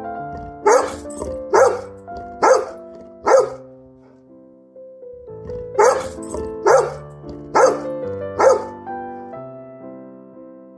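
A dog barking in two sets of four evenly spaced barks, just under a second apart, over background piano music.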